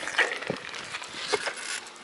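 A bicycle ridden along asphalt, giving a few sharp metallic clicks and rattles over a steady rush of wind and tyre noise.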